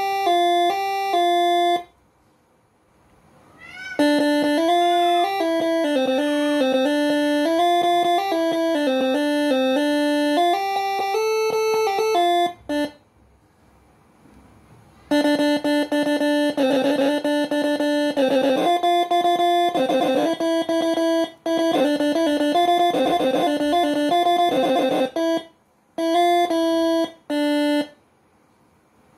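Basuri-style "telolet" multi-tone air horn melodies from the Moreno MS5 horn module, playing as strings of clear stepping notes. The tunes break off into short silences three times.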